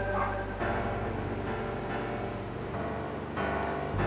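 Background drama score: sustained, layered music whose texture shifts about half a second in and again near the end.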